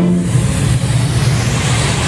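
Electronic dance music in a break without drums: a sustained distorted synth bass note under a wash of noise. The kick drums return right after.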